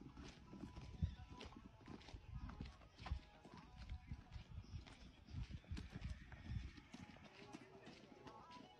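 Quiet footsteps of people walking on a gravel and dirt path, uneven steps with small stony clicks.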